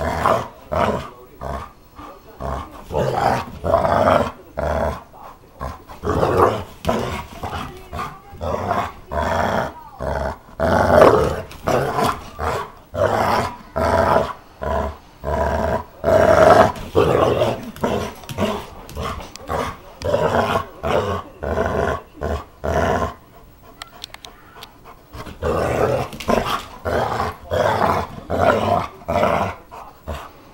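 A dog growling in play with a red rubber toy in its mouth, a rough growl repeated about once a second, with a short lull about two-thirds of the way through before it starts again.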